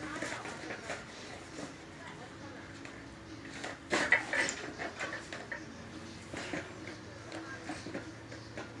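Cast-iron weight plates on a plate-loaded dumbbell handle clinking and knocking, with one loud clank about four seconds in.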